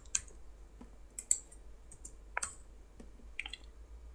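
Computer keystrokes, about half a dozen scattered clicks, some in quick pairs, as a line of code is copied and pasted.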